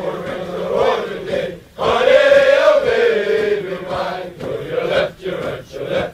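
A group of male voices chanting a military marching cadence together, line by line with short breaks between lines.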